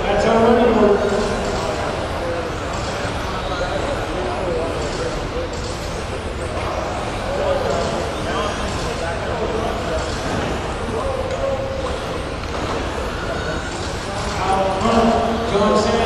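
Electric RC touring cars racing around an indoor track in an echoing gym hall: a steady wash of motor and tyre noise. Reverberant PA race commentary comes through at the start and again near the end.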